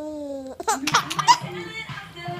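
The tail of a drawn-out spoken word, then several short bursts of laughter close together about half a second to a second and a half in.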